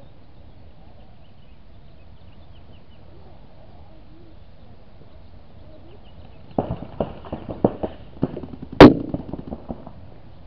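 Paintball markers firing a string of sharp pops, about three a second, starting a little past halfway through, with one much louder pop near the end.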